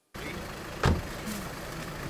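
A car running with steady street noise around it, and a single sharp thump just under a second in.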